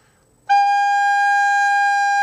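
Soprano recorder playing a single long G, held as a whole note at a steady pitch. It starts about half a second in.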